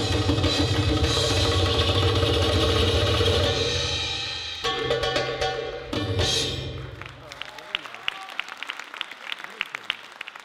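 Arabic tabla (darbuka) drum-solo music playing with heavy drum strokes, breaking off about four and a half seconds in, with final accents near five and six seconds. From about seven and a half seconds it gives way to audience applause.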